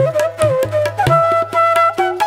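Bansuri bamboo flute playing a Hindustani classical raga melody with tabla accompaniment. The flute ornaments around one note, then holds a steady higher note from about a second in, while tabla strokes continue and the bass drum's pitch bends upward.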